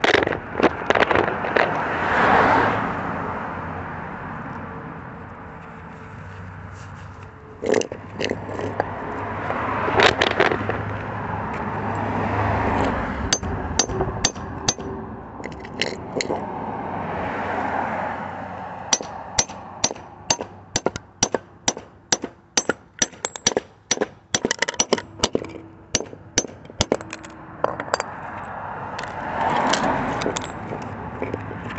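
Hammer striking the steel core of a microwave oven transformer to knock it apart and free the copper winding. It gives scattered sharp strikes in the first half, then a fast, even run of strikes, two or three a second, for most of the last third.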